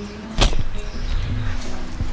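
Background music with steady held notes, and one sharp swish about half a second in.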